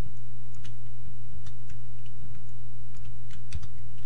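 Faint, scattered computer keyboard and mouse clicks, about eight short ticks, as the view is zoomed in, over a steady low hum that is the loudest sound throughout.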